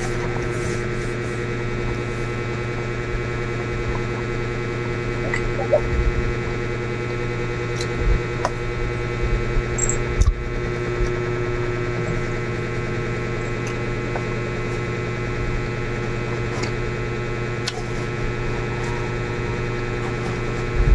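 A steady electrical hum with several fixed tones runs throughout. Now and then there are soft clicks and taps of a metal fork against a styrofoam food container.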